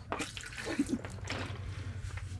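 A man drinking water from a plastic bottle: gulps and water moving in the bottle.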